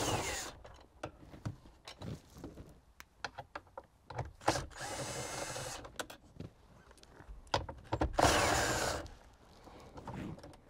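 Cordless drill with a 10 mm socket on an extension, backing out bolts in three short bursts. Each run ends in a falling whine as the motor winds down, with small clicks and knocks of handling in between.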